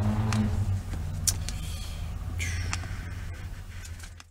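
Steady low background hum with a few faint clicks, fading away toward the end.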